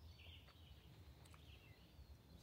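Near silence: quiet woodland room tone with a few faint, short high chirps, likely distant birds.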